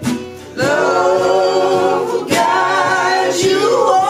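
Acoustic guitars strummed with singing over them, the vocal line coming in about half a second in and held through the rest.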